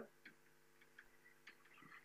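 Near silence with a few faint, irregular taps of chalk writing on a blackboard, over a faint steady room hum.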